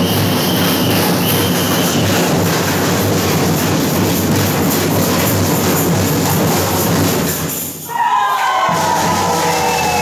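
Carnival bloco drum band playing, big bass drums and snare-type drums in a dense, steady beat. The sound dips briefly about eight seconds in, and a held pitched sound rises over the drums near the end.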